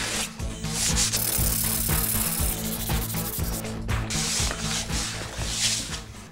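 Sandpaper rubbed back and forth over oak window casing in a series of uneven strokes: a light sanding of the wood to ready it for its finish.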